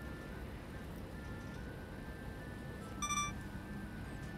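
Soft background music of quiet held notes, with one short, bright electronic chime about three seconds in: an editing sound effect of the kind that accompanies an on-screen caption.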